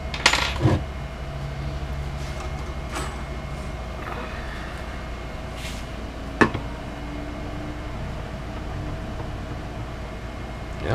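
Light metallic clinks of a hex key and a steel straightedge being handled on a guitar neck: a cluster of clinks at the start, another about three seconds in, and the sharpest click about six and a half seconds in as the straightedge is set down on the frets. A steady low hum runs underneath.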